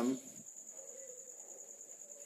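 Steady, high-pitched insect trill, finely pulsing, over a faint low hum.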